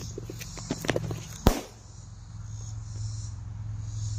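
Running footsteps through brush, then a single sharp bang about a second and a half in as a firecracker goes off inside a 3D-printed cannon. It is a failed shot: the tight projectile jammed at the end of the barrel and the blast vented out the back.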